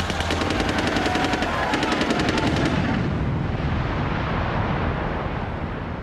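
Rapid automatic gunfire: a long burst of closely spaced shots lasting about two and a half seconds, then stopping. It is followed by a rumble that slowly dies away.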